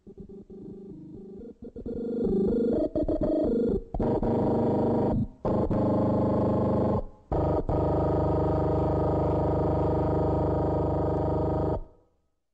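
Electronic synthesizer tones: quiet, quickly stepping notes at first, then from about four seconds a loud sustained chord of many steady tones, broken by a few short gaps and cutting off suddenly near the end.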